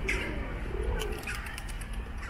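Feral pigeons cooing, two low coos in the first second, with higher bird chirps around them.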